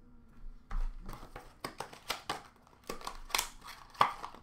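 Hands handling trading cards and plastic card sleeves on a counter: a run of light clicks, taps and rustles starting just under a second in.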